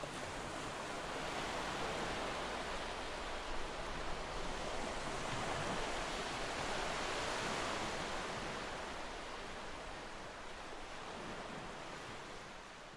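Gentle sea waves washing onto a sandy beach: a soft, steady wash of surf that swells a little and then fades toward the end.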